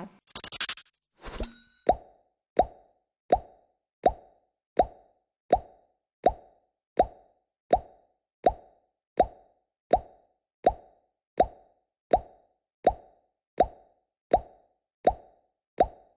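End-screen sound effect: a short whoosh and a click, then an evenly repeating hollow plop, about one every three-quarters of a second, each one identical.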